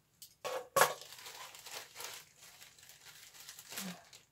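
Plastic mailer packaging being pulled open and crinkled by hand, with two sharp rustles in the first second, then softer, steady crinkling.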